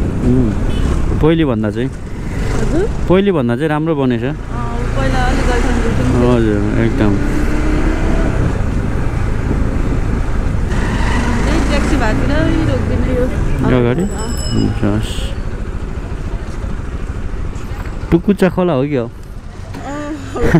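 A motorcycle running along a city street, a steady low rumble with passing traffic, under a voice that talks on and off.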